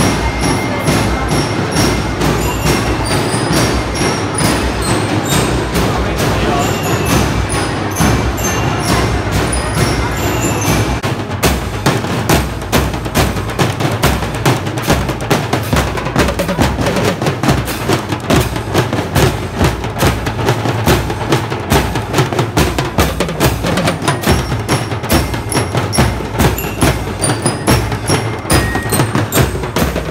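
Marching drum and lyre band playing live: bell lyres ring a melody over snare and bass drums, and from about eleven seconds in the drums take over with a steady, driving beat.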